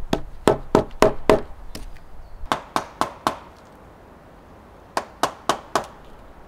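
Mallet striking a chisel cutting into a peeled log, sharp knocks in three runs of four to six blows at about three a second, with short pauses between runs.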